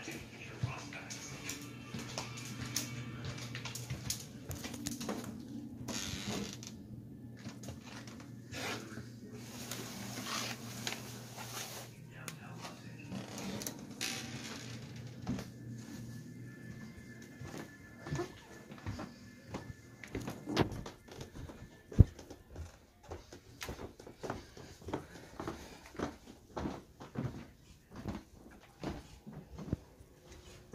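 Faint background music and voices in a small room, with scattered knocks and handling noises, and one sharp, loud click a little after the middle.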